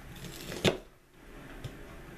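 Kitchen knife cutting through an ear of fresh corn, ending in one sharp knock as the blade hits the cutting board about two thirds of a second in, with a small click a second later.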